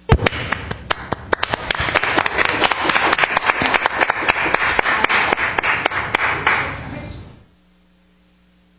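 A small group of people applauding, with individual claps standing out; it starts abruptly and dies away about seven seconds in.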